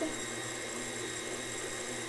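Electric tilt-head stand mixer running steadily at a raised speed with its whisk attachment, creaming soft butter, cream cheese and powdered sugar in the bowl; an even motor whine.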